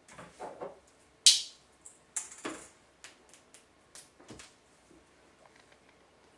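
Small clicks, taps and brief rustles of a plastic syringe and a glass medication vial being handled on a counter while a dose is drawn up. The loudest is a sharp click about a second in, followed by fainter ticks.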